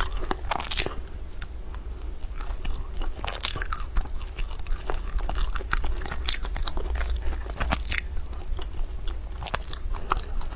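Close-miked biting and chewing of flaky egg yolk puff pastry, many short crisp crackles of the layered crust breaking at irregular intervals.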